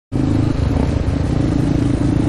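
Single-cylinder Yamaha Warrior ATV engine running at a steady pitch while riding along a trail.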